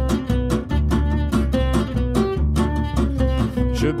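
Gypsy jazz (jazz manouche) trio playing: two acoustic guitars, one strumming a steady rhythm of about four strums a second while the other picks a line, over plucked upright double bass. A sung word comes in at the very end.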